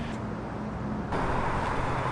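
Outdoor ambience: the low hum of road traffic or a running vehicle engine. About a second in the sound turns abruptly louder and hissier.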